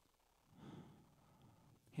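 A man's soft, audible breath about half a second in, otherwise near silence; a spoken word begins at the very end.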